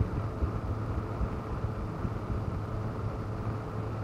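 3D-printed 'Patrick' PC cooling fan running: a steady airy rush over a low hum, with an uneven buffeting from turbulent airflow around its intake and sides. Measured at about 51 dBA and played back 10 dB louder.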